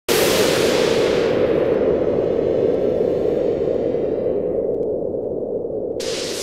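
Studio-logo sound effect: a sudden loud rushing burst whose high hiss fades away over the first two seconds, leaving a steady low rumble that slowly eases off.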